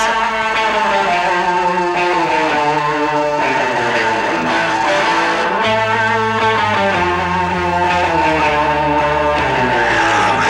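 Southern rock band in an instrumental break: an electric guitar plays a lead line full of bent, sliding notes over held bass notes and the band's backing.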